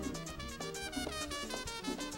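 Live merengue band playing an instrumental passage, with trumpet over a quick, steady beat.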